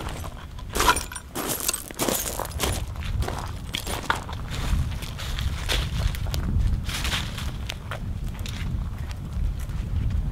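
Footsteps on gravel and on a dirt path covered in dry leaves, many irregular steps over a steady low rumble.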